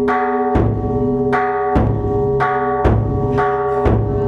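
Chầu văn ritual music played without singing: plucked, ringing lute notes over a steady beat of drum and cymbal strikes, the loudest strikes about once a second.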